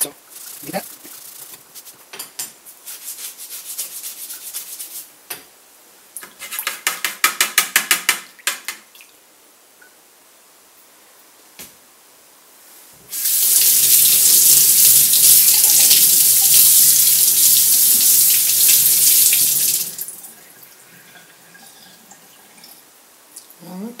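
Scrubbing of a small stainless steel tool with a Scotch-Brite scouring pad, ending in a short run of rapid back-and-forth strokes. Then a kitchen sink tap runs steadily for about seven seconds, rinsing the part.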